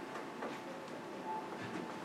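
Quiet classroom room tone: a steady background hum with a few faint rustles.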